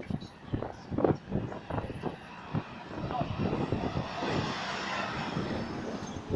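A double-decker bus passing close by: its engine and road noise swell up in the second half, over the chatter of passers-by.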